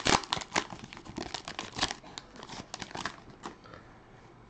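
Foil wrapper of a Prizm basketball card pack being torn open and crinkled by hand: a dense run of crackles that dies away about three and a half seconds in.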